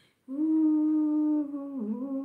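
A woman humming one long held note after a short breath, with a brief dip in pitch near the end.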